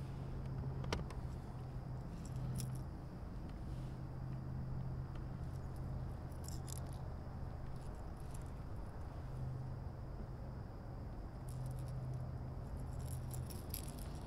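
Faint clicks and rattles of fishing tackle handled while a lure is tied onto the line, over a low hum that comes and goes.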